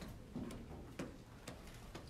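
Faint room tone with soft, regular ticks about twice a second.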